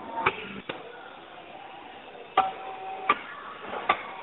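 Five sharp clicks or taps at uneven intervals over a steady low hiss.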